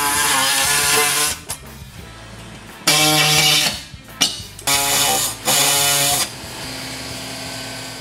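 A power tool run in four loud bursts on a car's underbody, the first about a second and a half long and three shorter ones later. This is the sound of fasteners being worked during teardown. Background music plays underneath.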